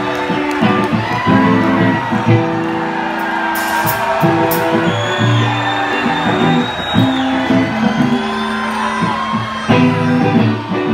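Live rock band playing with electric guitars and drums.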